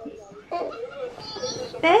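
Faint background voices, with a child's voice among them. Just before the end, a woman starts cooing "baby girl" to the baby in a sing-song voice.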